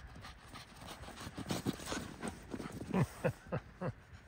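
Footsteps crunching through deep snow: a run of short, irregular steps, a few a second, louder in the second half.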